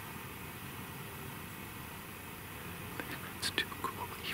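A man whispering close to the microphone. For the first three seconds there is only a steady faint hush, then hissy whispered words come in near the end.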